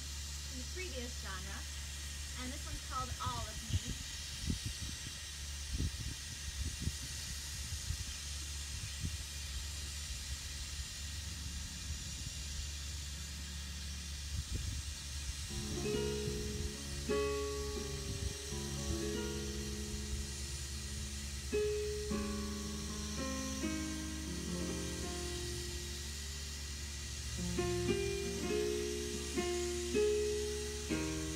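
Yamaha digital piano starting to play about halfway through: chords and single notes. Before it comes in, there are scattered low thumps and rumbling, over a steady low hum.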